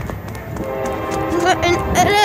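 Running footsteps on a concrete walkway with the phone jolting, and short breathless vocal sounds from the child about a second and a half in and again at the end. A faint steady hum lies underneath.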